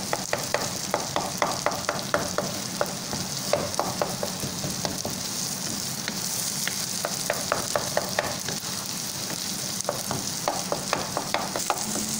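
Brain masala frying over high heat, sizzling steadily as it is roasted down in ghee. A wooden spatula stirs it with quick, irregular strokes that click and scrape against the pan, with a couple of short lulls in the stirring.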